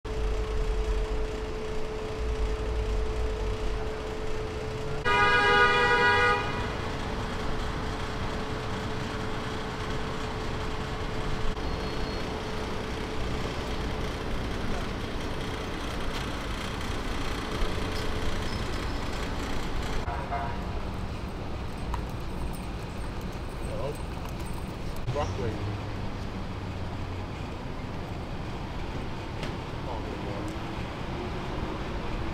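City street traffic noise with one car horn honk lasting just over a second, about five seconds in.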